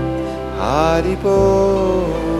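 A man singing a devotional mantra in long held notes over a sustained instrumental drone, sliding up into a new note about half a second in.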